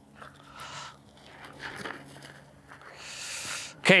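Soft rustling and scuffing of a ghillie suit and gear against sandy dirt as a person gets down into the prone for a high crawl, with a few light scuffs and then a longer rustle near the end.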